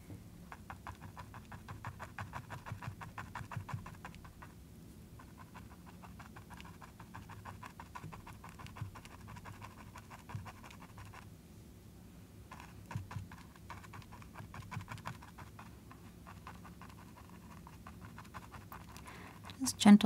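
Small stiff bristle brush tapping thick white acrylic paint onto canvas in quick, soft dabs, several a second, with two short pauses, stippling a furry texture. A steady low hum runs underneath.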